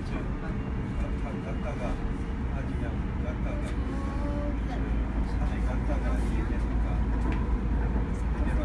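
A Busan–Gimhae light rail car running along its track, heard from inside the car: a steady low rumble of wheels on rail that grows a little louder about halfway through.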